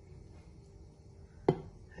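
A single sharp knock with a short ring about one and a half seconds in, as a spatula scoops a piece of baked kafta out of a glass baking dish; otherwise low room tone.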